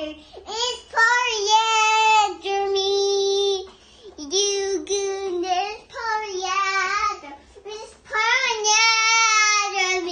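A toddler girl singing unaccompanied in a high voice, in four short phrases separated by brief pauses.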